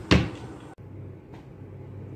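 A wooden dressing-table drawer being pushed shut by its handle: one sharp knock just after the start that dies away quickly.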